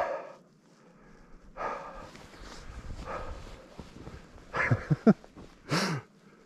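A man breathing hard as he walks through deep snow, with a soft noisy stretch of footsteps and breath, then a few short voiced huffs and a sharp exhale near the end.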